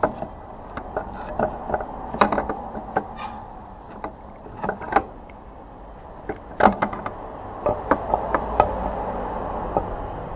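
Scattered clicks and knocks of hands and metal tools working on an engine's aluminium timing chain cover, at an uneven pace, the loudest knock about two-thirds of the way in.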